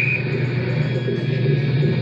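Amplified experimental electronic sound through a guitar amplifier: a steady low hum under a dense, noisy wash with wavering tones, and a short rising whistle right at the start.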